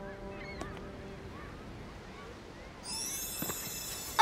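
Quiet beach ambience with a few faint bird calls, then, about three seconds in, a bright, high sparkling magic shimmer as the enchanted journal begins to glow with an incoming reply.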